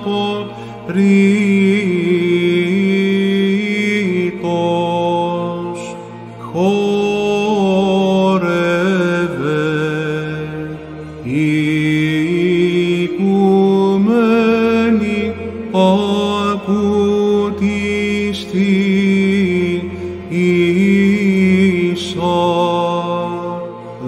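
Greek Orthodox Byzantine chant: a male voice sings slow, ornamented melodic phrases over a steady held low drone, with short breaks between phrases.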